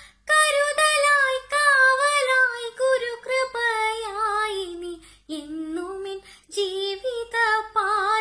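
A girl singing solo with no instrument heard: a slow melody in phrases with held notes. The pitch falls through the first half, then climbs again after a short breath.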